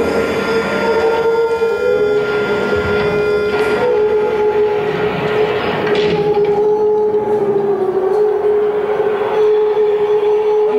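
Bass clarinet and accordion sustaining a long, droning held note in a contemporary chamber piece, with reedy overtones coming and going over an airy, breathy hiss that thins out about four seconds in.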